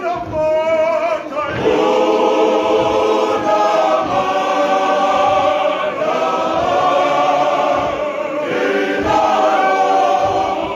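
Male voice choir singing in harmony, holding long chords, with a brief break about a second in.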